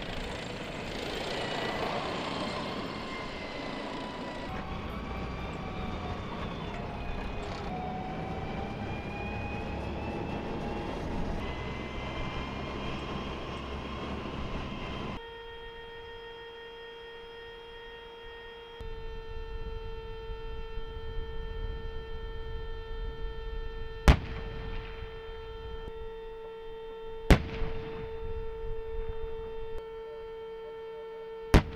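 M1 Abrams tank running, its gas-turbine whine and track noise gliding up and down in pitch as it drives by. After a cut there is a steady whine, then two loud, sharp blasts of tank gunfire about three seconds apart, near the end.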